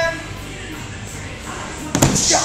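A thud of a body landing on a padded wrestling mat near the end, after a stretch of low room noise with music underneath.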